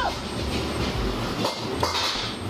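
Steady background noise of a commercial kitchen: a low rumble with a hiss over it, and a couple of short clicks near the end.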